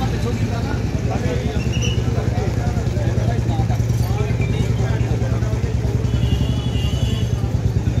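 A steady low motor hum with fast, even pulsing, under people's voices talking.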